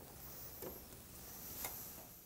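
Quiet room tone with two faint ticks about a second apart, the second one sharper.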